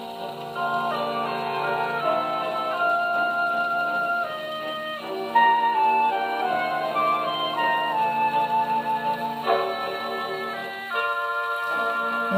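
A 78 rpm shellac record playing on a 1929 HMV 101 wind-up portable gramophone, heard acoustically through its sound box: instrumental music of held notes stepping up and down in pitch, with a narrow, treble-less tone.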